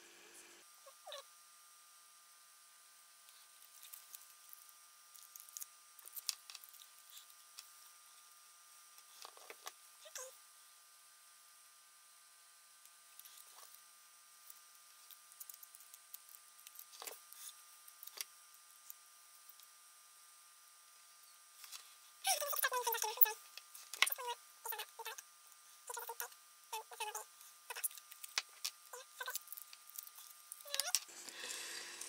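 Faint handling of adhesive foil tape and its paper backing: scattered small crinkles and taps, with a denser run of crinkling about three-quarters of the way through.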